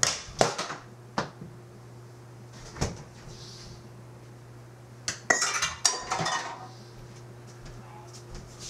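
Dishes, pans and cutlery knocking and clinking on a kitchen counter: a few separate knocks, then a short burst of clattering and rattling about five seconds in.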